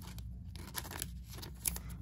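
Thin clear plastic card sleeve crinkling in the fingers as a trading card is slid into it, with a few small sharp crackles.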